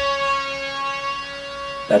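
A synth stab on Ableton's Analog synthesizer: a single bright note, held steadily and slowly fading.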